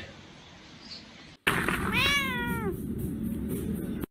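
A domestic cat meowing once, about two seconds in: a single call of under a second that rises and then falls in pitch.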